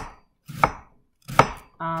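Chef's knife slicing thin shreds from a quarter of a white cabbage and striking the chopping board, a sharp stroke about every three-quarters of a second.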